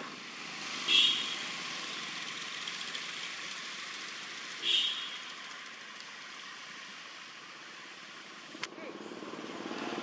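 Steady outdoor background noise, broken by two short high-pitched calls, about a second in and again near the middle.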